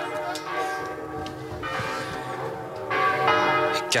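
Church bells ringing, several tones sounding together and hanging on, with fresh strokes about one and a half and three seconds in.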